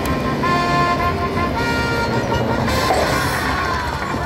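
Aristocrat Lightning Link Tiki Fire slot machine playing held electronic tones and chimes at the end of its free-spins bonus, over casino background noise.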